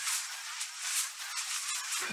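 High-pitched hissing crackle of a sparks sound effect, with no bass, swelling and easing a few times.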